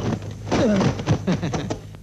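Dubbed kung fu fight sound: men's shouts and grunts with a few sharp blow impacts among them, over a steady low hum.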